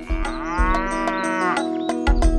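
A cow mooing: one long moo lasting about a second and a half, over background music with a steady beat.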